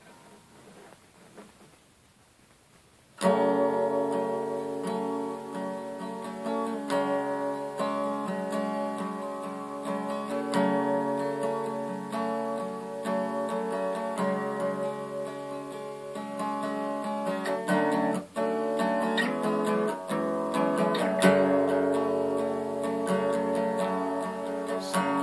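Acoustic guitar strummed, chords ringing out as a song's instrumental intro, starting about three seconds in.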